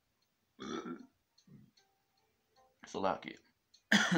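A man's non-speech vocal sounds: a short burp about half a second in, then throat-clearing coughs near three seconds and a louder one at the end.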